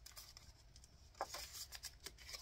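Faint rustling and crinkling of a clear plastic binder pouch and a laminated card being handled, with a few light taps a little over a second in.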